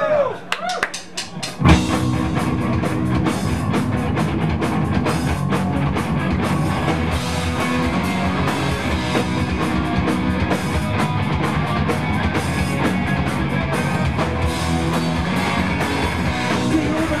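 A live rock band starts a song. A few sharp clicks come first, then a little under two seconds in the band crashes in together with distorted electric guitars, bass and drum kit, and plays on loud and steady.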